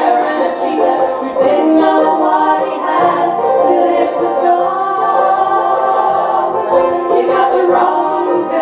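Live acoustic folk-country band: women's voices singing in harmony over strummed banjo, mandolin and acoustic guitar.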